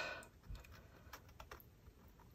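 Faint light ticks and scratches of a fountain pen nib drawing a line on paper, a few scattered small clicks.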